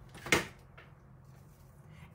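A single sharp knock, a hard plastic hot glue gun set down on a tabletop, with a fainter tap just after; then faint room tone.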